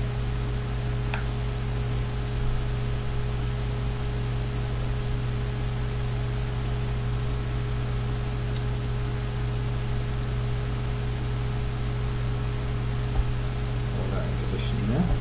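Steady electrical hiss and mains hum from the recording, with a couple of faint, brief clicks as small model parts and a screwdriver are handled.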